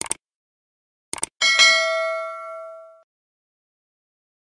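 Subscribe-button animation sound effect: a click, then a quick double click about a second in, followed by a bell ding that rings and fades over about a second and a half.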